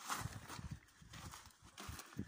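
Footsteps on sandy ground: a run of uneven, soft thuds several times a second.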